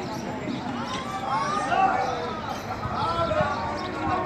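Voices of a group of people, children among them, chattering and calling out over one another, with a few dull thumps.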